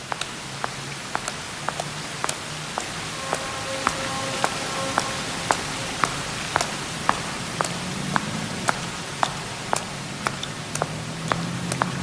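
Stiletto heels clicking on wet pavement in a steady walk, about two steps a second, over a steady hiss of street ambience. Sparse, quiet film-score notes are held underneath.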